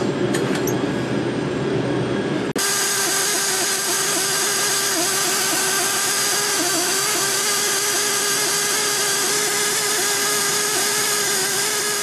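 Steady running machinery with a constant-pitched hum, breaking off abruptly about two and a half seconds in into a similar steady machine sound that holds to the end.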